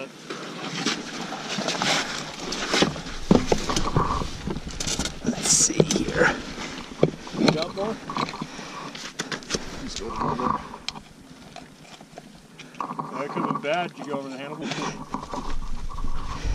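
Rustling and scattered clicks and knocks from gloved hands working at an ATV wheel and hub, with muffled voices now and then.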